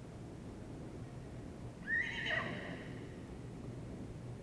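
A horse whinnies once, about two seconds in: a short call that jumps up in pitch and then falls away.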